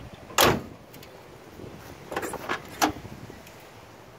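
Steel door of a 1959 Chevrolet Impala being opened: a loud clunk about half a second in, then three lighter clunks a couple of seconds later.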